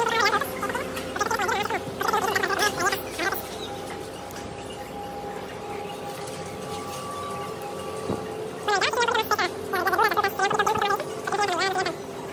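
Bursts of wordless voice sounds in the first three seconds and again in the last three, with a steady hum in the quieter stretch between.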